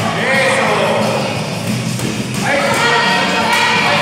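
Several people shouting and calling out over one another at ringside during a kickboxing bout, easing for a moment about halfway through, then rising again. There are occasional dull thuds from gloved strikes.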